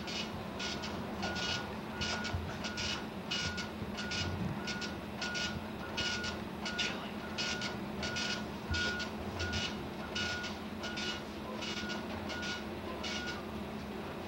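Electronic beeping, a steady buzzy tone repeating about three times every two seconds, that stops about a second before the end, over a steady low hum.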